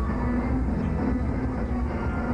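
Metal band playing live, heard as a dense, steady wall of distorted guitars, bass and drums with held low notes that shift in pitch, in a bass-heavy, muddy recording.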